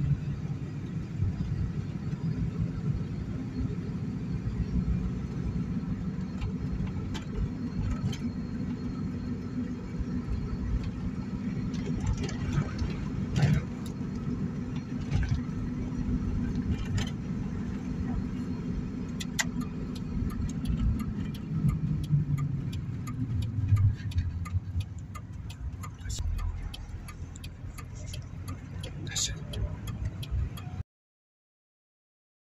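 Cabin noise of a car driving on a city street: a steady low rumble of engine and tyres, with scattered light clicks and rattles in the car, more of them in the second half.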